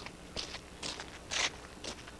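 Footsteps crunching on the frozen surface close to the microphone: irregular steps about every half second, the loudest a little past halfway.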